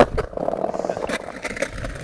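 Skateboard on brick paving: a sharp clack as the board comes down, then the wheels rolling over the bricks, with another knock about a second in.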